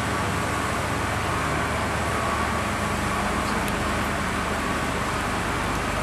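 Steady street traffic noise with the low, even hum of running engines.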